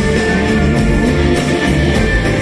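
Loud live band music from a concert stage, heard from the crowd.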